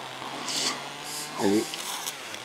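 A short pause in a man's speech, with one brief voiced sound about one and a half seconds in over a faint, steady low hum.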